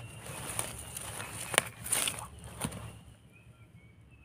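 A knife blade scraping and digging into soil around termite mushrooms, several sharp scrapes and taps over the first three seconds, the loudest about a second and a half in. Behind it a steady high insect trill, with short chirps coming in near the end.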